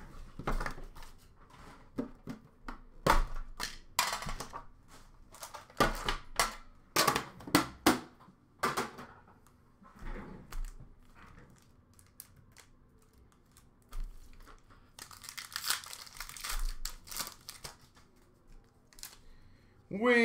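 Foil trading-card pack wrappers being torn open and crinkled, with cards handled, in a run of sharp crackles. It goes quieter midway, then comes a dense burst of crinkling near the end.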